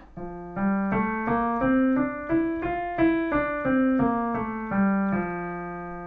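Piano playing the F major scale one note at a time, about three notes a second, up one octave and back down, ending on a held low F.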